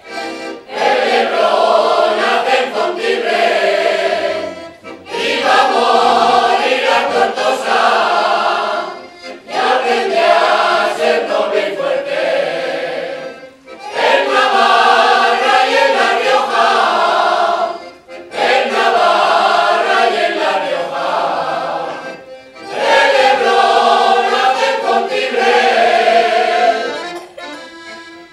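Mixed choir singing a Riojan jota with accordion accompaniment, in phrases about four seconds long with short breaks between them.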